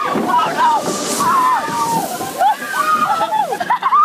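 Riders' voices in short rising and falling cries over splashing, sloshing water as a Splash Mountain log-flume boat runs down the Slippin' Falls drop. The sound falls away abruptly at the very end.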